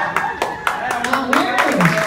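Audience clapping, about four claps a second, with voices over it.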